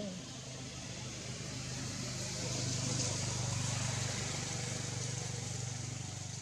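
A motor engine humming steadily, growing louder about halfway through and easing slightly toward the end.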